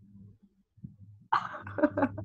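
A short, rough burst of a person's cough or throat noise about one and a half seconds in, heard through video-call audio after a faint low hum.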